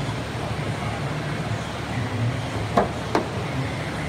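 Claw hammer levering screws set in a trailer's tin roof skin against a wooden straight edge to pull out a crease, with two sharp metallic knocks a little under half a second apart near the end. A steady low hum runs underneath.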